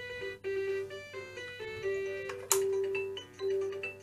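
VTech Tiny Tot Driver toy playing a simple electronic tune of beeping notes through its small speaker, with a sharp click about two and a half seconds in.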